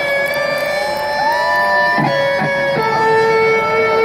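Electric guitar solo played live through a stadium PA, with long sustained notes and string bends. The held note drops to a lower pitch a little before the three-second mark.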